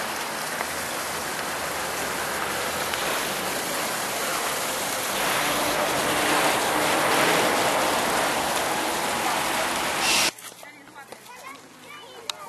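Spring water at the source of the Warta river running through a shallow, narrow stone-lined channel: a steady rushing hiss that swells a little midway and cuts off abruptly about ten seconds in.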